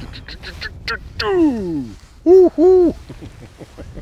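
A man's wordless exclamations as a perch is reeled up to the boat: a long falling "ohh" about a second in, then two short, loud hooting "oo-oo" calls just after halfway.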